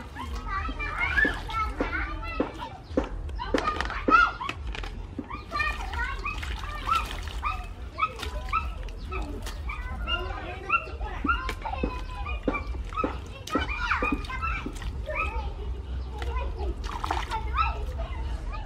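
Hands swishing and splashing water lily stems and herbs in a steel bowl of water, with short sharp splashes and knocks. Voices talk throughout in the background.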